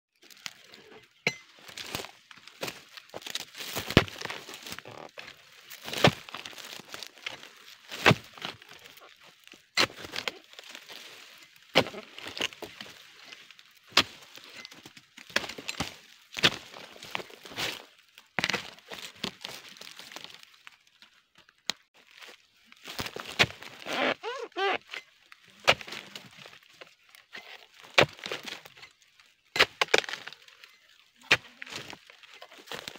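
Sharp cracking knocks that repeat about every two seconds, typical of a harvesting tool chopping through oil palm fronds and stalks.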